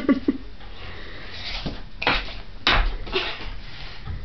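A few short knocks and scuffs, the loudest about two seconds in and again just under three seconds in, from a child stepping and turning on the floor while exercising.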